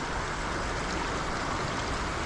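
Shallow river water running steadily close to the microphone, an even rushing sound.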